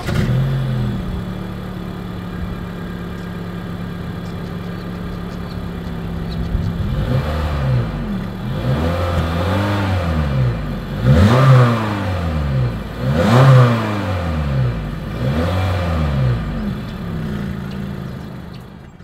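2020 Honda Fit's 1.5-litre four-cylinder engine heard at its stock single exhaust outlet, idling steadily at first. About seven seconds in it is revved about five times, each blip rising and falling in pitch, the two middle ones the loudest, before it settles back to idle near the end.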